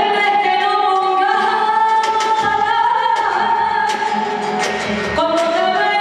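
A female singer holding long sung notes, amplified, over a live band with drums and cymbals; one note is held through the first half and a new phrase begins near the end.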